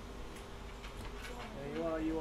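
A few faint clicks over a low steady hum, then a voice begins speaking near the end.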